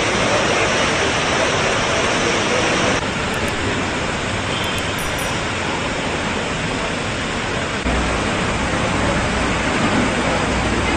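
Pressurised water jetting and spraying from a burst water main: a steady rushing noise that shifts abruptly in level about three seconds in and again about eight seconds in.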